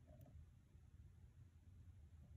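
Near silence over a low steady hum, broken by one faint tick near the start: a hook pick working the pins of a Corbin lock cylinder.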